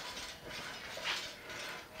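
Homemade gravity wheel turning on its frame: a faint, steady mechanical rattle and whir from its long slide arms and pulley wheels, swelling slightly about a second in.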